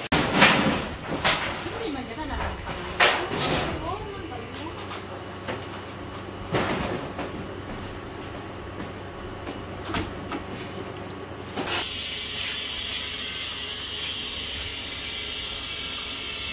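Work on an old corrugated-sheet roof on a bamboo frame: a handful of sharp knocks and metallic clanks, about five in the first ten seconds, with voices in between. Near the end the knocks give way to a steadier noise.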